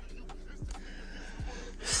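A person's quick, audible intake of breath near the end, over a faint hiss and a few soft low thumps.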